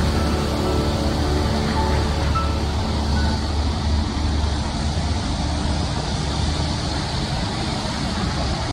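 Steady city traffic noise: the low rumble of cars and a coach moving slowly in congested traffic. Sustained music-like tones over it fade out in the first few seconds.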